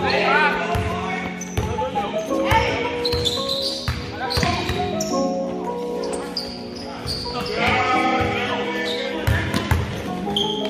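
Basketball dribbling and bouncing on a hardwood gym floor, heard over background music with vocals.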